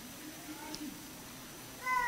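Quiet room tone, then near the end a short high-pitched squeal that falls slightly in pitch.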